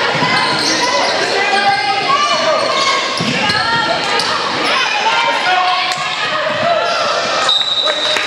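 A basketball being dribbled on a hardwood gym floor among indistinct voices from players and spectators, echoing in a large gym. Near the end comes one short, steady, high whistle blast, a referee's whistle.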